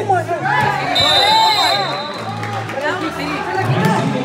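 Several voices shouting and calling over background music in an indoor soccer hall. About a second in, a referee's whistle sounds once, a steady high tone for about a second.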